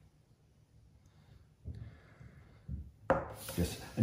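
Kitchen knife cutting the rind off a block of hard cheese on a plastic cutting board: quiet cutting and rubbing, with a few short knocks, the loudest about three seconds in.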